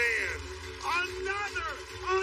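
A man's voice speaking in short phrases, over a steady low hum.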